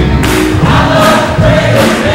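Gospel choir singing a held line over a live church band.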